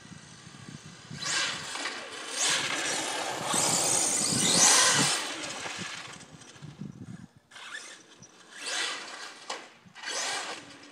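HPI Savage XL Flux brushless electric RC monster truck driving on asphalt: bursts of motor whine and tyre noise as it is throttled up, the longest and loudest in the first half, then several short bursts near the end.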